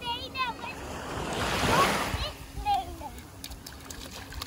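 A small wave washing up a sandy shore, swelling to its loudest a little before halfway and then drawing back. A young child's short high vocal squeals come just before and just after it.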